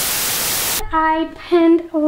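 A loud burst of TV-style white-noise static, under a second long, that cuts off sharply; a woman's voice starts speaking about a second in.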